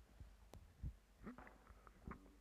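Near silence broken by faint low thumps and a single click about half a second in: handling noise from a handheld microphone as it is passed from one person to the next.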